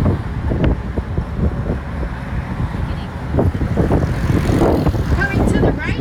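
Wind buffeting the microphone and road noise on the open top deck of a moving tour bus, a steady uneven rumble. Voices of passengers come in over it in the second half.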